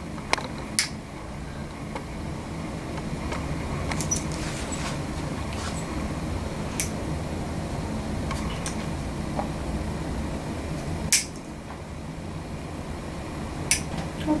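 Nail nippers snipping through a thick, curved toenail: a scattering of short, sharp clicks, the loudest about eleven seconds in, over a steady low hum.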